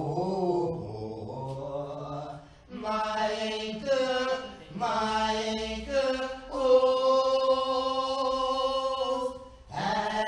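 Slow sacred singing in a church service. The phrases move from note to note, with a short break, then settle into one long held note near the end.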